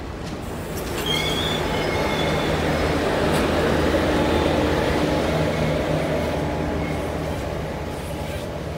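Passenger train hauled by a WAP-4 electric locomotive passing close by at speed: a dense rumble of wheels on rail. It swells about a second in, is loudest midway and eases near the end, with thin high wheel squeals near the start.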